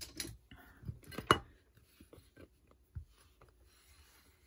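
Small clicks and taps of a trading card being fitted into a clear plastic card stand and set down on a table, the sharpest click about a second and a half in.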